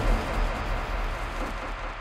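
Noisy rumble fading away steadily: the tail of a cinematic impact sound effect in a trailer intro.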